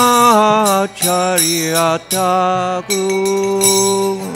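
A man singing a Bengali devotional bhajan in slow, long-held notes, striking karatals (small hand cymbals) about once a second.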